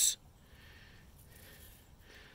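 A man's spoken word ends just at the start, then faint, steady outdoor background hiss with no distinct event.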